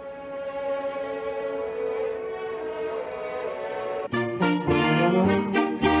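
Orchestral music: a long held chord, then about four seconds in a louder passage of short, accented chords.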